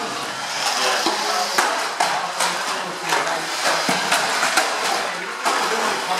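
1/12-scale RC banger cars racing on a carpet oval track: a busy clatter of knocks as the plastic-bodied cars bump into each other and the track barriers, over a hubbub of voices in the hall.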